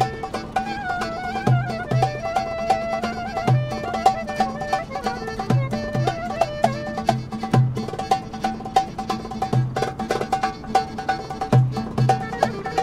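Traditional Turkish folk-style music: an ornamented melody on reed and bowed strings over crisp percussion, with a low drum beat falling every second or so.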